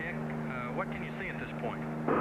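Steady low drone of a light helicopter in flight, with faint, indistinct voices under it.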